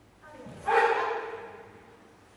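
A single loud shout from a person's voice, rising into a strong held cry just after half a second in and then trailing away.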